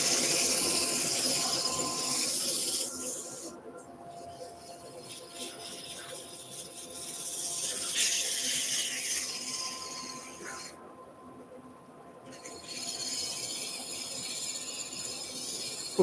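150-grit abrasive paper hissing against a wooden spindle spinning on a wood lathe, pressed on and eased off several times: strong at first, fading after about three seconds, swelling again around the middle, almost stopping for a second or so, then back near the end. Under it, a faint steady hum from the lathe and dust extractor.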